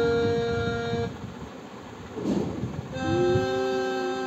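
Electronic keyboard sounding a single held note until about a second in, then, after a short pause, another held note from about three seconds in.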